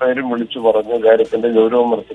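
Only speech: a person talking continuously, with a narrow, phone-like tone.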